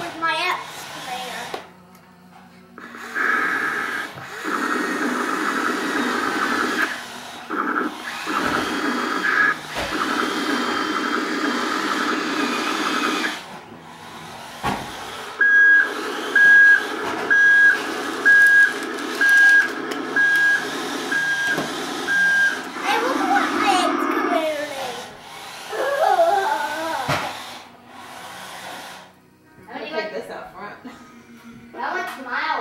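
Electronic toy worked from a wired push-button controller, running and playing its sound effects. A buzzy electronic whir lasts about ten seconds, then comes a string of about eight evenly spaced high beeps, roughly one a second, over a pulsing lower sound.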